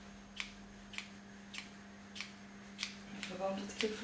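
Hairdressing scissors snipping through the ends of long hair: five crisp cuts about every half second as a straight line is trimmed across the back.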